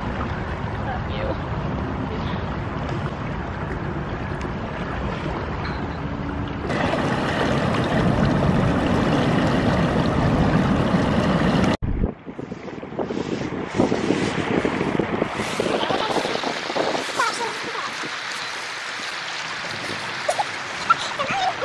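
Wind buffeting the microphone over fast-flowing water, getting louder about seven seconds in. After a sudden cut about twelve seconds in, small waves lap and splash against rocks at the lake's edge.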